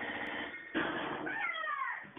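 A meow-like cry that falls in pitch, lasting about half a second in the second half, over sound from a television.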